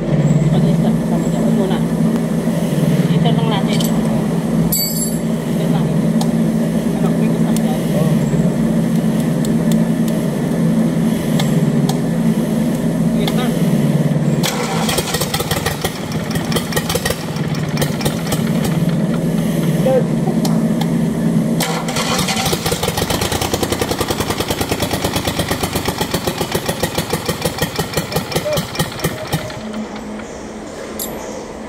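Isuzu 3AD1 three-cylinder diesel engine being cranked on the starter for about twenty seconds while its fuel system is bled of air. About two-thirds of the way in the steady cranking stops and the engine runs with a rhythmic pulsing beat.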